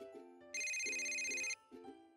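Electronic phone ring tone sounding once for about a second, over soft background music.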